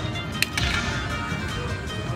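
Dragon Link slot machine playing its hold-and-spin bonus music and sound effects while a free spin runs, with one sharp click about half a second in.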